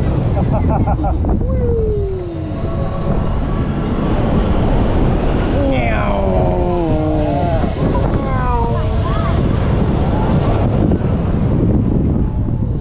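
Strong wind buffeting the microphone as an S&S swing ride arcs back and forth, with riders' wordless yells and whoops sliding up and down in pitch about a second in, around six seconds and again around eight to nine seconds.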